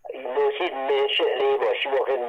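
Speech only: a voice talking continuously, its sound thin and cut off at the top as over a telephone line.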